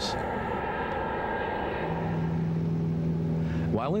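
Jet airliner flying past, its engines making a broad rushing noise with a steady whine that fades over the first couple of seconds. From about halfway a steady low engine drone takes over.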